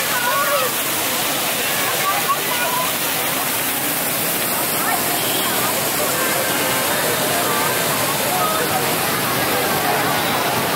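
Steady rushing and splashing of floor-level fountain jets spraying onto wet paving, with crowd voices and children's chatter mixed in.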